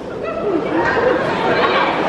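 Many voices talking and shouting over one another at once, crowd chatter in a large hall, getting louder about half a second in.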